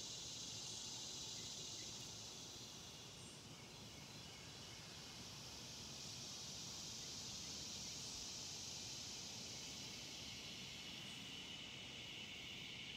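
A steady, high-pitched chorus of insects, fading a little and then swelling again.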